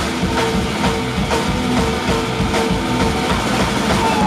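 Live rock band playing loud: electric guitar, bass guitar and drum kit with a steady beat, an instrumental passage with no singing.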